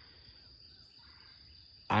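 Faint, steady high-pitched chorus of insects, with a man's voice starting again at the very end.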